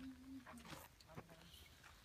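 Near silence, with a faint held voice-like tone at the very start and a few faint clicks.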